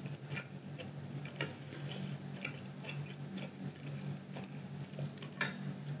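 Faint, irregular clicks and small mouth sounds of a person chewing food, over a steady low hum.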